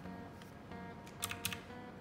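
Desktop calculator keys pressed about four times in quick succession a little past the middle, with one more click at the end, over quiet background music.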